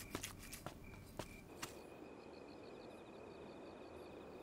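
A cleaver chopping raw meat on a wooden board: several faint, sharp knocks at uneven intervals in the first half. From about halfway, crickets chirping in a rapid, even rhythm take over.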